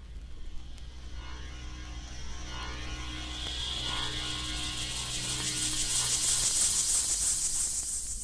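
Vinyl playback of a psychedelic rock record's opening: a rising whoosh of high noise swells over several seconds and peaks near the end, with faint sustained notes beneath, over a steady low hum from the record.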